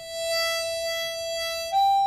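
Chromatic harmonica playing one long held note, then moving to a higher held note about three-quarters of the way through. It is played with cupped hands, with a slight waver in level, as a demonstration of hand vibrato.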